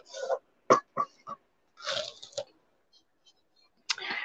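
Handling noise from objects being moved on a table: three light knocks in quick succession and short bursts of rustling as things are set aside and the next piece is picked up.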